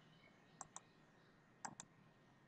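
Faint computer mouse clicks: two pairs of quick ticks about a second apart, as points of a slab outline are picked on screen.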